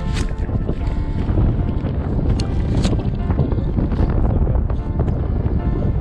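Airflow rushing and buffeting over the microphone during a paraglider flight, heavy and low, with background music playing over it.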